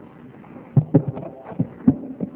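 A handful of short, dull thumps in the second half, most likely knocks or handling picked up by a close microphone.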